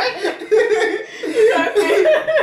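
A man and a woman laughing together.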